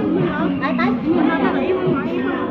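Women's voices talking and chattering over one another at a market stall, with a steady low hum underneath.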